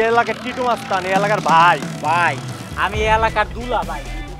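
A man's voice speaking over background music, with the music's low bass entering near the end.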